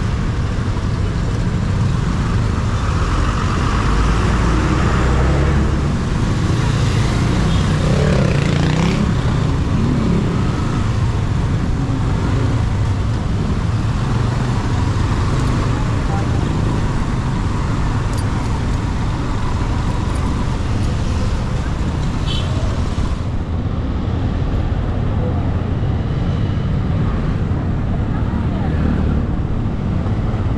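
A motorcycle's engine runs steadily with road noise while riding slowly in dense scooter and car traffic. The engine note rises and falls about eight seconds in.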